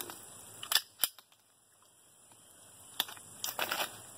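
Two pistol shots, sharp cracks about a third of a second apart, a little under a second in. A few quieter knocks and scuffs follow near the end.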